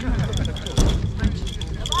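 Indistinct voices of a group of children milling about and talking, over a steady low rumble, with a few sharp clicks about a second in.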